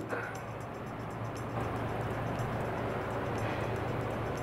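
A steady low hum with a soft hiss under faint background music, with no other event standing out.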